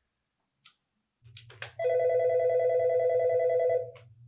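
Office desk telephone ringing: one electronic ring with a fast warble, lasting about two seconds, over a low steady hum.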